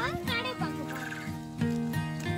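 Background music with a steady beat; near the start, a short warbling call with quickly wavering pitch cuts across it.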